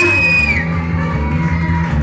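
Live blues-rock band playing: electric guitar, bass guitar and drum kit, with a held high note in the first half second.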